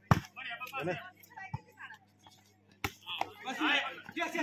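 A volleyball being hit twice during a rally: a sharp smack as it is passed at the very start, and another just under three seconds in. Players' voices call out between and after the hits.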